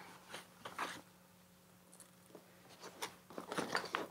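Faint rustling and crinkling of a softbox's silver reflective fabric being handled, with a few small scrapes and taps that grow busier near the end. A low steady hum runs underneath.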